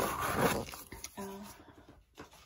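Cardboard subscription box being handled and opened, a short rustle and scrape of the box under the hands in the first half second, then fading away.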